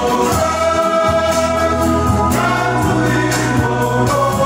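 Male choir singing a hymn in held, sustained chords, accompanied by acoustic guitars.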